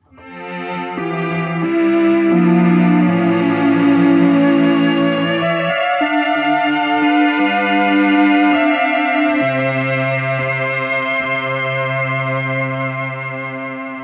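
Oberheim OB-SX analog polyphonic synthesizer playing a slow run of sustained chords. It swells in softly at the start, changes chord about once a second, then settles on one long held chord for the last few seconds.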